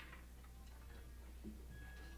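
Near-silent pause between songs on a live soundboard tape: steady electrical hum with a few faint clicks and taps from the stage, and a faint held tone coming in near the end.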